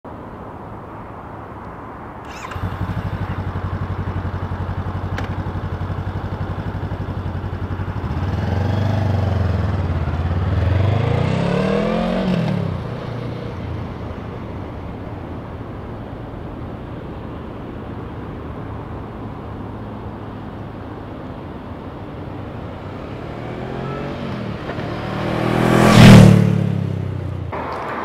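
Honda CB500F's parallel-twin engine starting up about two seconds in and idling steadily, revved up and down a couple of times in the middle before settling back to idle. Near the end the engine note rises and swells to its loudest as the motorcycle rides up close past the camera.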